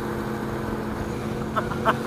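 Motorcycle engine running steadily at cruising speed on the highway, with wind noise.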